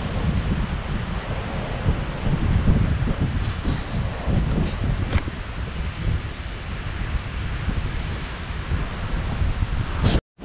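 Wind buffeting the camera microphone: a rough, rumbling noise that swells and dips in gusts.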